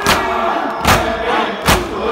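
Mourners beating their chests in unison (matam): three heavy slaps in a steady rhythm, a little under a second apart, under a group of men's voices chanting an Urdu noha.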